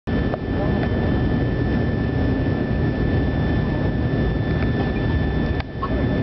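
Cabin noise inside an Avro RJ airliner on its landing approach: a steady rush of airflow and turbofan engine noise, with a constant high engine whine over it. A click and a brief drop in the noise come near the end.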